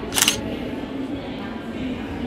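A single brief camera-shutter click, over indistinct chatter of people in a large room.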